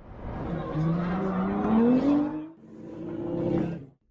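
A car engine revving hard, its pitch rising steadily for about two seconds before dropping away, then a second burst of revs that cuts off suddenly at the end.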